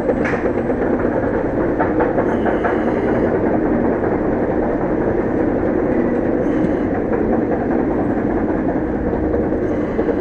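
Roller coaster chain lift rattling steadily as the floorless coaster train is hauled up the lift hill, with a few sharp clicks in the first few seconds.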